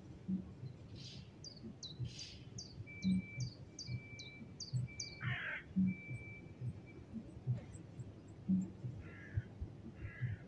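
Birds calling in trees: one bird repeats short, high, down-slurred chirps about three times a second, which fade out after a few seconds. A few harsher calls break in, the loudest about five seconds in, along with a thin steady whistle that breaks on and off.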